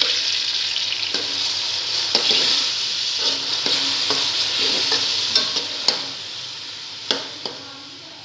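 Raw minced chicken sizzling in hot oil in an aluminium pot while a metal slotted spoon stirs and breaks it up, its sharp clicks and scrapes against the pot coming every second or so. The sizzle softens over the last couple of seconds.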